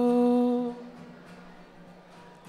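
A man singing one long held note at a steady pitch in a Konkani song, which ends just under a second in; after it only faint acoustic guitar accompaniment is left.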